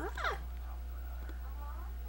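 Seven-week-old baby cooing. A short high squeal right at the start sweeps up in pitch, and a softer coo rising and falling follows just before the end.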